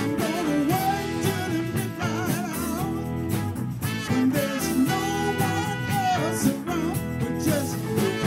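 A live soul band plays an instrumental break, with electric guitar, horns, drums and congas keeping a steady groove under a bending lead melody.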